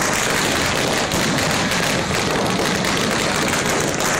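Fireworks crackling and hissing densely and continuously, with many small reports packed close together at a steady, loud level.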